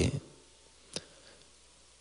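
A pause between a man's sentences: his last word trails off right at the start, then quiet room tone with one short click about a second in.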